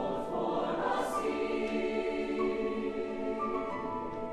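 A large mixed choir singing a slow passage of long held chords.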